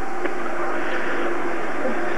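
Steady background din of a busy dining room, with a faint steady hum and one light click about a quarter of a second in.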